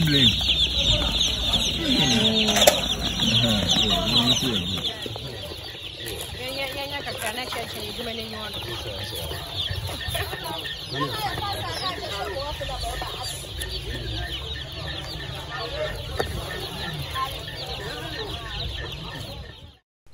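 A large number of day-old broiler chicks peeping together in a dense, continuous high chorus. It is louder for the first few seconds, with voices mixed in, then settles to a steadier, quieter level.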